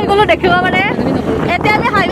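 A person talking during a scooter ride, over steady wind and road noise from the moving scooter.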